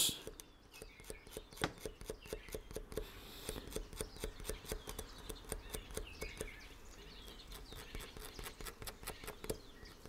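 Scalpel blade scoring the tab of a plastic lure fin in quick, short scratches, about three or four a second. It is cross-hatching the tab to give it a rough texture for the glue to grip.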